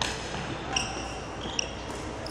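Badminton play: a sharp hit at the start as the jumping player strikes the shuttlecock, then short squeaks of court shoes on the wooden floor with sharp knocks about three-quarters of a second and a second and a half in.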